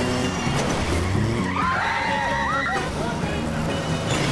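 Car engine and tyre noise as a small hatchback drives fast on a road past a coach, with a French song, a singing voice over it, playing at the same time.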